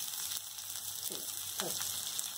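Chopped onions and green chillies with tempering seeds frying in oil in an iron kadai: a steady sizzle.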